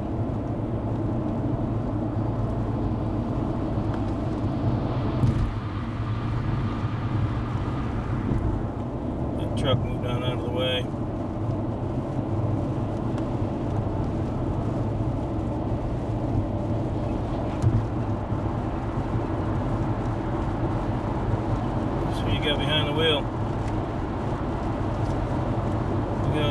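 Steady road noise inside a moving vehicle at highway speed: engine and tyre rumble, with two brief knocks about five seconds in and near eighteen seconds.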